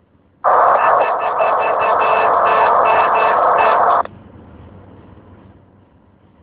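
CB radio static: a loud hiss opens abruptly about half a second in, runs for about three and a half seconds and cuts off suddenly, leaving a faint hiss.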